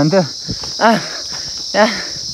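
Steady, high-pitched chorus of insects droning without a break in forest, with short bursts of a man's voice over it near the start, about a second in and near the end.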